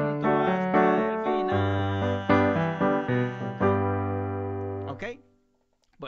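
Electronic keyboard with a piano voice playing a run of chords over held bass notes. The playing stops about five seconds in.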